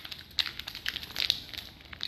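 A plastic candy bag crinkling as it is handled, with irregular short crackles and rustles.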